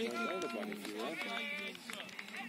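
Several people talking at once, voices overlapping, the words not clear.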